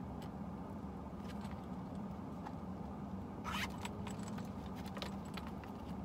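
A leather zip-around wallet being handled: small clicks and light clinks of its metal zipper and hardware, with a short louder rustle about three and a half seconds in. A steady low hum runs underneath.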